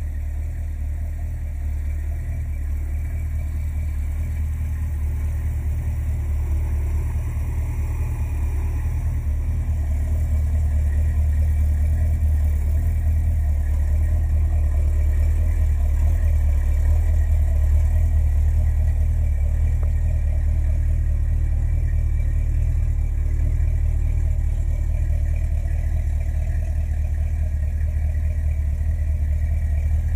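The V8 engine of a 1976 Dodge Ramcharger idling steadily with a low, even sound, growing slightly louder over the first several seconds.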